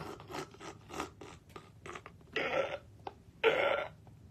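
A man's stifled, silent-wheeze laughter behind his hand: a string of short breathy huffs, then two longer breathy gasps about a second apart near the end.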